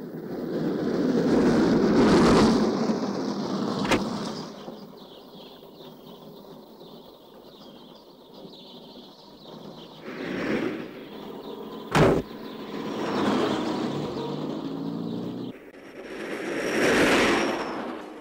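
A car driving by, then more vehicles passing in swells of road noise, with one sharp car door slam about twelve seconds in.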